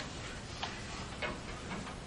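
Steady hiss of an old lecture tape recording, with three or four faint ticks.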